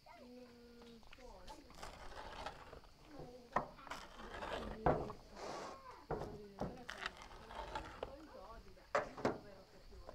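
Pizza wheel cutter rolling through a freshly baked pizza's crunchy crust on a wooden board: several short cutting strokes with sharp clicks.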